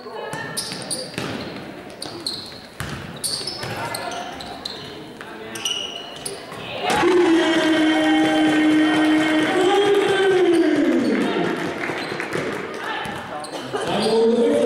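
Basketball bouncing on a hardwood gym floor with short shoe squeaks, echoing in a large sports hall. About seven seconds in, a loud long drawn-out call takes over for about four seconds, wavering and then falling in pitch at the end.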